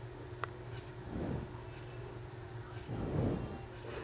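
Faint handling sounds as a pencil marks around a paper pattern pinned onto nylon spandex fabric: a small click, then two soft rustles of paper and fabric about a second and three seconds in, over a steady low hum.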